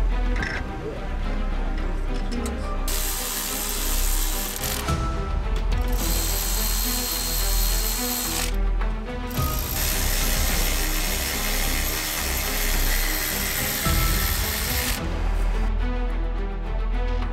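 Milwaukee cordless electric ratchet spinning bolts on a diesel cylinder head, whirring in three runs of roughly two, two and a half and five seconds. Background music plays throughout.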